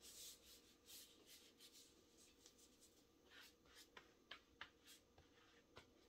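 Near silence with faint, scattered rubbing and scratching: hands sliding over and stretching a damp plant-fibre crochet top on a foam blocking mat.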